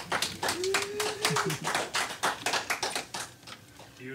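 A few people clapping by hand in a small room, the claps quick and uneven, dying out about three seconds in. A voice calls out with one held note about half a second in.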